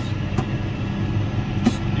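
Tractor engine running steadily under load, heard from inside the cab as a low drone, with two short clicks, about half a second in and near the end.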